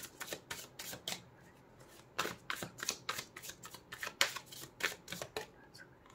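A deck of tarot cards being shuffled by hand: quick runs of crisp card snaps and flicks, with a brief lull about a second and a half in.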